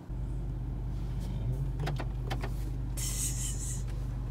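Steady low hum of a car engine idling, heard inside the cabin, with a few light clicks in the middle and a short hiss near the end.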